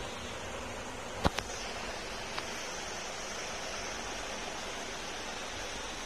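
Steady hiss of room background noise, with one sharp click about a second in.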